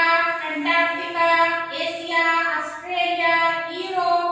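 A woman's voice reciting the names of the continents in a slow sing-song chant, each word drawn out on a long held note.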